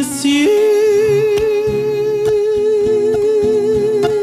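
A man's singing voice holds one long note with vibrato, from about half a second in to the end, over plucked nylon-string Spanish guitars.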